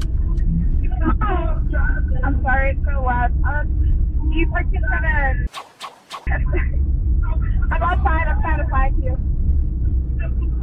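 Talking inside a car over the steady low rumble of the cabin. The sound cuts out for under a second a little past halfway, then resumes.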